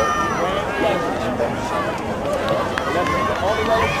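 A crowd of spectators talking and calling out, many voices overlapping at once.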